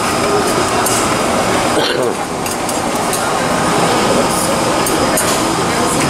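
Metal spatula and scraper working meat on a flat steel griddle: a few sharp scrapes and clinks of metal on metal over a steady busy background of noise and voices.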